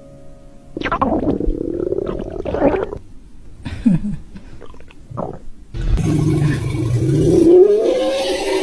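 Exaggerated cartoon stomach-rumble sound effects: a run of loud gurgling growls starting about a second in, then from about six seconds in a longer, louder growl like a roar that rises in pitch near the end.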